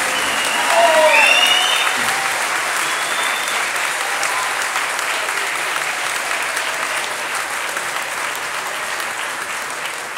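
Audience applauding steadily at the end of a klapa song, loudest about a second in.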